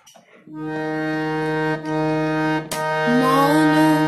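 Harmonium reeds sounding a steady held note from about half a second in, dipping briefly twice. A woman's voice begins singing over it, with a wavering pitch, about three seconds in.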